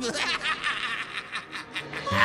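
A snickering laugh: a rapid run of short, breathy snickers.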